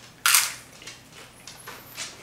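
A loud crunch as a cheese-topped tortilla chip is bitten off, about a quarter second in, followed by fainter crunching as it is chewed.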